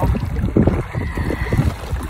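Wind buffeting a phone microphone, a low, gusty rumble that rises and falls irregularly.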